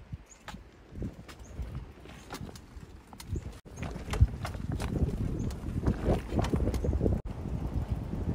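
Bicycle rolling over a rough, rutted dirt and gravel track: tyres crunching with irregular knocks and rattles, growing louder about halfway through.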